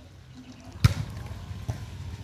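A volleyball struck hard by hand: one sharp slap a little under a second in, then a faint tap near the end.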